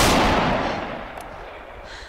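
A single loud gunshot at the very start, its echo dying away slowly over about two seconds.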